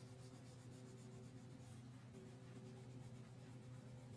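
Faint scratching of a crayon rubbed in short, rapid strokes across paper, over a steady low hum.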